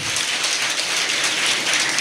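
Audience applauding: a dense, even patter of many hands clapping that goes on steadily through the pause.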